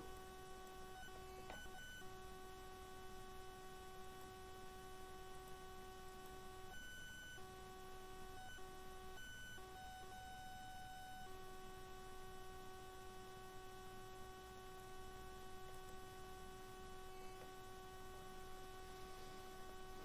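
Faint, steady electrical hum with a thin whine, a recording-chain or mains noise rather than any action. It partly drops out for a few seconds around the middle, then returns.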